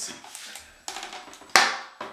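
Plastic toilet seat lid being handled and raised, with soft rubbing and one sharp plastic knock about one and a half seconds in.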